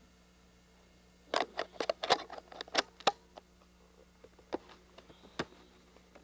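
Camcorder being handled: a quick run of sharp clicks and knocks from fingers and the camera body, starting about a second in, then a few scattered clicks.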